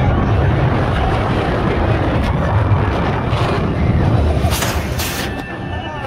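Roller coaster train running along a steel track, a loud steady rumble that eases off near the end as it nears the station. Two short hisses come about four and a half and five seconds in.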